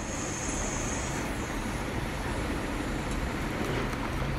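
Onions, mint and ginger-garlic paste sizzling in sesame oil in an aluminium pressure-cooker pan as they are stirred and sautéed, a steady even frying hiss.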